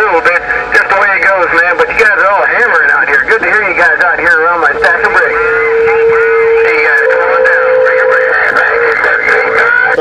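Voices of other stations coming in over a President HR2510 radio's speaker tuned to 27.085 MHz: thin, telephone-like and garbled. A steady whistle tone sits over them from about five seconds in, a second slightly higher whistle joins about two seconds later, and both stop a little after eight seconds.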